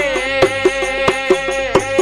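Rajasthani devotional folk bhajan music: one long held melodic note over a steady beat of small hand percussion clicks.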